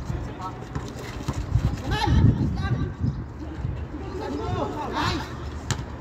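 Players' voices calling out on an outdoor basketball court, over a steady low rumble, with a single sharp knock near the end.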